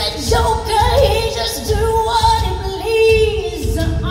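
A woman singing live over band accompaniment in a large concert hall, holding long notes with vibrato. One phrase ends shortly before a new one begins near the end.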